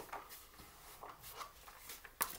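Faint, soft rubbing and scraping as hands sweep chopped celery across a chopping board into a dish, in several light strokes.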